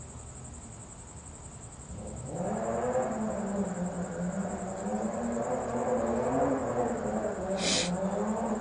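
A woman's voice making a long, wavering sound without words, starting about two seconds in and running on steadily, with a short hiss near the end.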